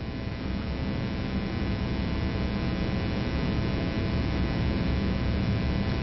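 Steady electrical mains hum and buzz with a hiss underneath, the recording's noise floor, growing slightly louder.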